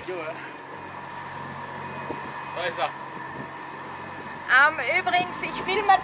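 A person's voice over a steady background hum, louder and more animated from a few seconds in.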